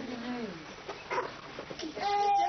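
Young children's voices, soft and indistinct, with pitch sliding up and down.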